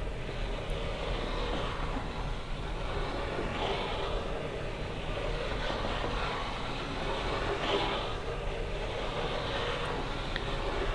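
Steady background rumble and hiss.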